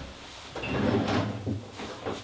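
A low kitchen unit is pulled open with a scraping rattle that builds over about a second, as items inside are moved about.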